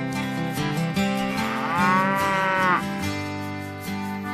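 A cow moos once, one long call that rises and falls in pitch, starting about a second and a half in and lasting just over a second, over acoustic guitar music.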